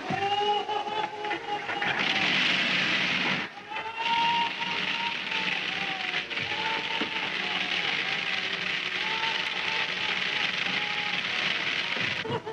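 Water gushing from bathtub taps into the tub, a steady hiss that swells about two seconds in, with background music playing over it.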